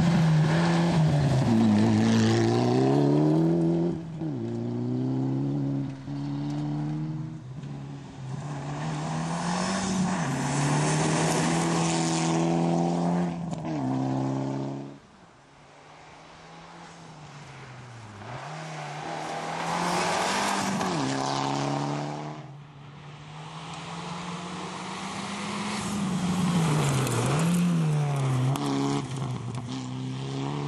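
Mitsubishi Lancer Evolution rally car's turbocharged four-cylinder engine driven flat out on gravel, its pitch climbing and dropping sharply at each gear change. It passes close by, fades away and approaches again more than once.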